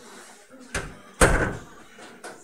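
Two heavy thumps about half a second apart, the second louder with a short ringing tail, over faint voices.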